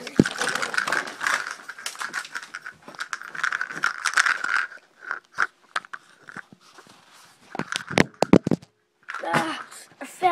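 Rustling and scraping of fabric against a phone being handled, crackling with many small clicks, followed by a few sharp knocks about eight seconds in.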